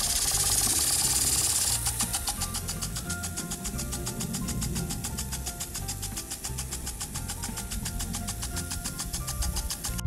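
Garden sprinkler spraying the lawn with a hiss, then a fast, even ticking of about seven ticks a second, the kind an impact sprinkler makes, with background music playing alongside.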